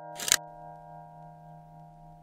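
A camera shutter click sound effect, one quick snap about a quarter second in, over a sustained chord of background music that rings on.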